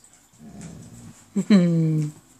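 A saluki giving a quiet low grumble, then one loud drawn-out bark-howl that falls in pitch, lasting about half a second, near the end.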